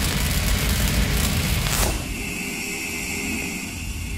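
Cinematic logo-intro sound effect: the rumbling tail of a deep boom, with a falling whoosh about two seconds in, then a thinner steady high hum that begins to fade near the end.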